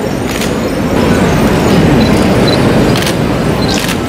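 Steady, loud rumbling background noise of a crowded ceremony hall, with a few sharp clicks.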